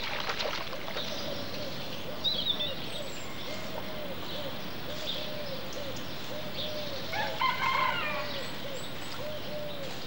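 Birds calling in the countryside: a steady run of low repeated coo-like notes, about two a second, with a few high chirps and one louder call a little after seven seconds.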